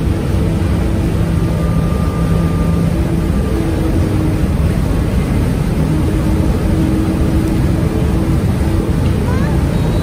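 Car ferry underway: engines running with a steady low hum under the loud rush of the propeller wash churning the wake.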